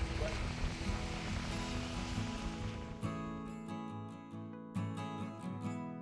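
Acoustic guitar background music with plucked and strummed notes. For about the first three seconds it plays under a wash of wind and surf noise, which then cuts off suddenly, leaving the guitar alone.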